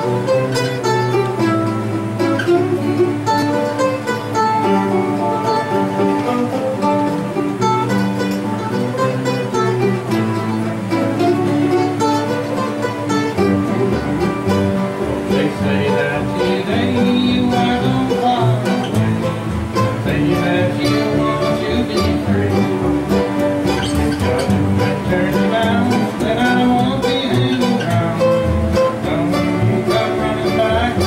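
Acoustic guitars playing together in an instrumental passage, with strummed chords and a picked melody line. A deeper bass part comes in about halfway through.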